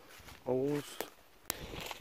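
A man's short vocal sound about half a second in, followed by two sharp clicks about a second and a second and a half in.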